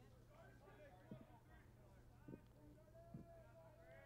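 Near silence at a ballpark: faint distant voices talking over a low steady hum, with three soft brief knocks.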